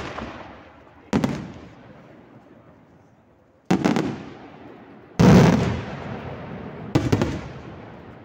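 Aerial firework shells bursting overhead: five sharp booms, each trailing off in a rolling echo, the loudest about five seconds in.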